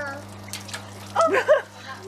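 Water sloshing and lightly splashing as hands stir water balloons around in a plastic tub of water, with a short high-pitched voice a little over a second in.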